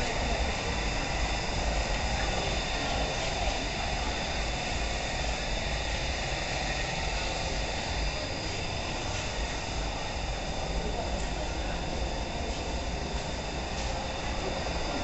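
A steady low rumble with indistinct voices of people in the background, and a constant high-pitched whine.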